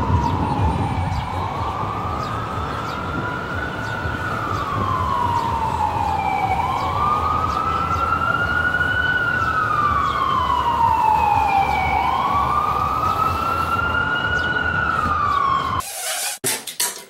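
Emergency vehicle siren wailing, a single tone rising and falling slowly in pitch about every five and a half seconds, over a low rumble of city traffic.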